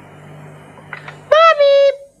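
A voice calls "Mummy" into a microphone, a short first syllable and then a second held on one high steady note, as the sound is sampled into a Fairlight sampler. Before the call there is a low steady hum with a few faint clicks.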